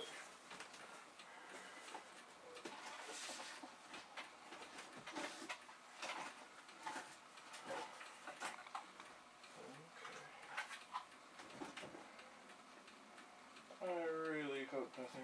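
Faint, irregular clicks, knocks and rustling as objects on a cluttered table are moved aside and handled while a loose computer keyboard is dug out from among the equipment.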